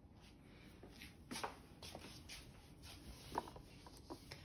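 Very quiet, faint soft rustles and squishes of hands moving in a tub of glitter slime, with a couple of slightly louder soft noises about one and a half and three and a half seconds in.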